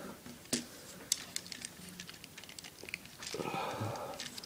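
Scattered light clicks and taps of a plastic Transformers Dark of the Moon Megatron action figure as its parts are moved and pressed into place.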